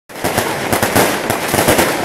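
A string of firecrackers going off in a rapid, irregular run of sharp cracks.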